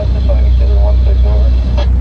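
Steady low drone of a power boat's engines running under way, heard from inside the enclosed helm, with a faint hiss of wind and water above it.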